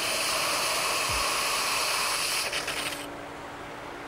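Air hissing out of a pool filter's air relief (bleeder) valve while the running pool pump pushes water up through the filter. The hiss breaks up and cuts off about three seconds in, the sign that the air is purged and the pump is holding its prime, leaving a faint steady hum.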